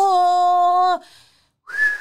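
A person's voice holding one long, level vowel for about a second, like a drawn-out call. A brief high-pitched sound follows near the end.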